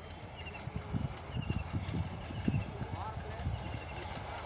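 A passing train's wheels clattering over rail joints: irregular low knocks, several a second, with a bird chirping in short repeated triplets over them.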